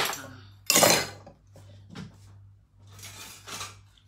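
Kitchen utensils clinking and scraping in a mixing bowl while ingredients are handled, with the loudest scrape about a second in and another near the end. A low steady hum runs underneath.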